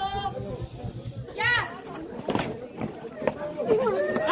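Teenage students' voices chattering and calling out close by, overlapping, with one high shout about one and a half seconds in.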